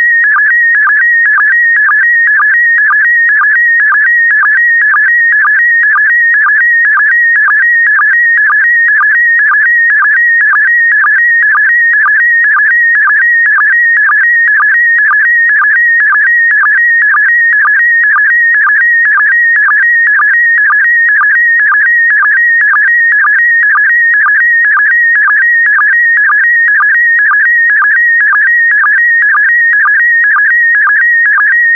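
Slow-scan TV image signal in PD120 mode: a loud, high, constantly warbling tone whose pitch carries the brightness and colour of the picture. It drops to a short low sync pulse about twice a second, once for each pair of image lines sent.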